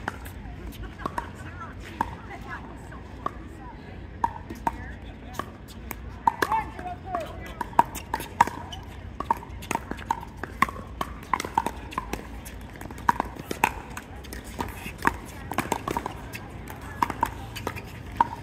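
Pickleball paddles striking a plastic ball during a rally: a long series of sharp pops, some loud and some faint, with voices in the background.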